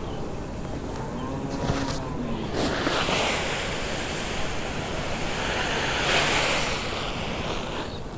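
Pearl millet pouring from a sack onto a heap of cracked maize: a steady rushing hiss of grain that builds about two and a half seconds in and tails off near the end.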